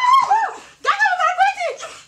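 A woman's high-pitched wailing cries during a scuffle: two short cries, then a longer wavering one about a second in.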